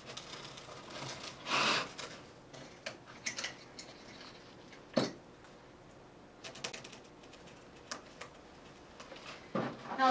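Wired ribbon rustling and small clicks and taps as hands handle the ribbon loops and toothpicks. There is a longer rustle early on and one sharp click about halfway through.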